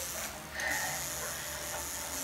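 Coil tattoo machine buzzing steadily as its needle works on skin, a continuous low hum with a hiss above it.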